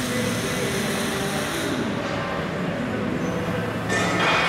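Steady outdoor street and traffic noise, its hiss easing about halfway through and returning near the end, with faint voices underneath.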